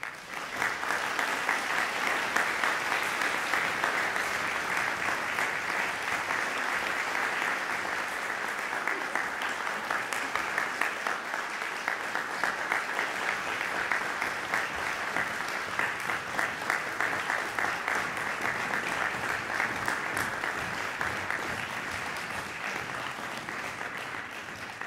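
Audience applauding in a reverberant concert hall: the clapping breaks out suddenly, holds steady and dense, and eases off slightly near the end.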